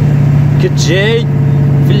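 Heavily loaded truck's diesel engine running with a steady low drone, heard from inside the cab on a long downhill grade with the engine brake holding the truck back.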